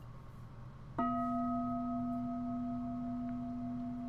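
A Buddhist bowl bell struck once, about a second in, with a wooden striker. It rings on with a steady low hum and a few fainter, higher overtones, dying away slowly. The bell is invited as a call to stop and return to mindful breathing.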